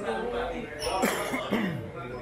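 A person coughs about a second in, amid people talking.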